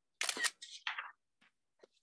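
iPad camera shutter sound as a photo is taken: a short, bright burst about a fifth of a second in with a second, softer part right after, lasting under a second, followed by a few faint taps near the end.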